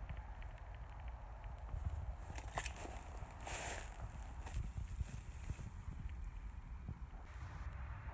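Footsteps walking over scattered board debris and dry grass, irregular soft thumps and rustles, with a brief louder rustle about three and a half seconds in.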